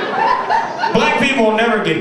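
Laughter, then a man's voice speaking and chuckling through a microphone from about a second in.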